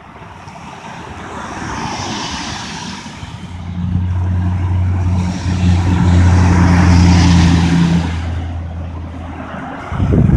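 Road vehicle noise: a rushing sound that swells and fades twice, with a low steady engine hum coming in about three and a half seconds in and stopping just before the end.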